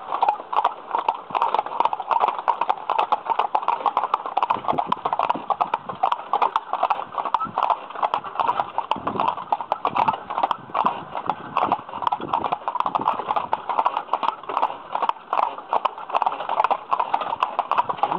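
Hooves of a pair of harnessed carriage horses clip-clopping steadily on a paved road, in a dense, unbroken run of sharp strikes.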